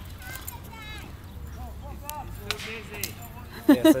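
A person laughing loudly near the end, over faint background voices and short high calls.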